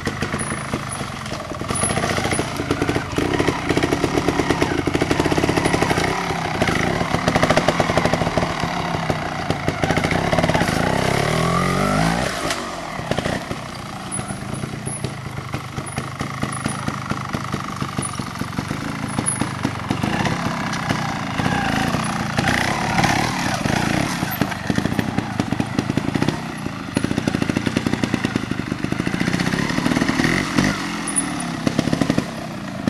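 Trials motorcycle engine (a Scorpa) revving up and down as the throttle is worked over rough, rocky ground. It dips in pitch and level and then climbs again about twelve seconds in.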